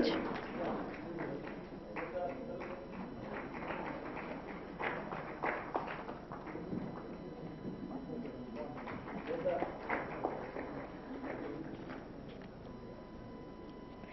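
Light, scattered clapping with occasional taps and knocks, under faint indistinct voices in a large hall.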